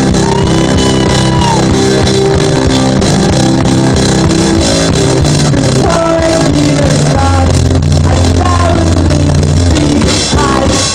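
Loud live keyboard-and-drums band playing an up-tempo song: sustained synth bass notes under a steady drum beat, with singing over it.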